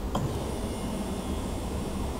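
Electric fuel pump running steadily with a continuous hum and a faint high whine, feeding fuel round through the return line during a flow check. The owner judges the pump to be underperforming.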